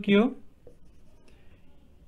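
Marker pen writing on a whiteboard, faint, mostly in the second half, after a short spoken word at the start.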